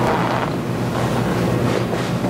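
Steady room background noise: an even rushing hiss over a low hum, with no words.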